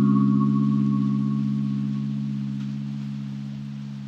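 Background ambient music: one sustained chord of soft electronic tones that slowly fades away, with no new notes struck.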